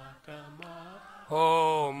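A voice chanting a Hindi devotional bhajan (guru aarti) in a long, drawn-out melodic line over a steady low drone. The singing is soft at first and swells back in a little over a second in.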